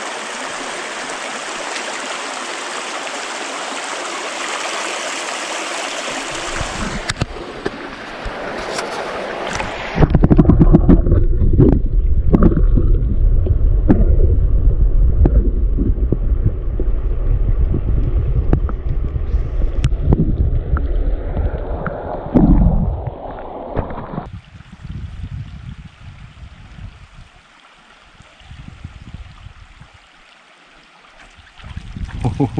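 Creek water running over shallow rocks close by for the first several seconds. From about ten seconds in, the sound turns loud and muffled, a low rumbling and gurgling heard from under the water's surface, until it drops away about 24 seconds in to a quiet trickle.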